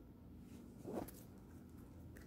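An oracle card slid across the table and laid into place: one short brushing sound about a second in.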